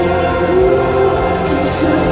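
Live choral music: a large choir singing sustained notes with a string orchestra.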